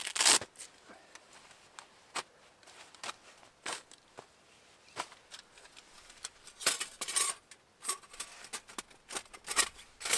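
Thin titanium panels of a Bushbox XL Titanium folding stove clicking and clinking as they are slid out of a fabric pouch and fitted together by hand. A brief rustle of the pouch comes near the start, and a few louder clicks about seven seconds in.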